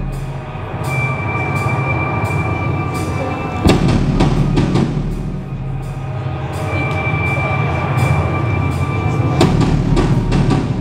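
Live rock band playing: electric guitar and drum kit together, with cymbal strokes at a steady pulse under held guitar notes, and a heavier drum hit about four seconds in and again near the end.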